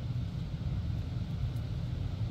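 Steady low rumble with a faint hiss and no distinct events.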